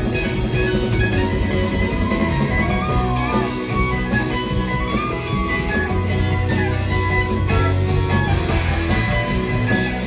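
Live rock band playing an instrumental jam: electric guitar lines over drum kit and bass, with no singing.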